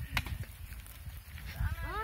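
A cow calls briefly near the end: one short moo rising in pitch. There is a low rumble and a single click just after the start.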